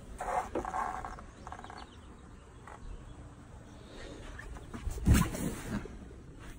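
A vinyl-upholstered boat seat lid being lifted open: two stretches of creaking in the first two seconds, then a thump about five seconds in.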